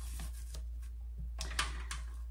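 Fabric ribbon being tied around the neck of a metal milk can: a few short, soft rustles and light ticks from the handling, over a steady low hum.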